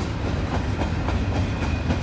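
Freight train of stacked shipping containers rolling along the tracks, a steady low rumble.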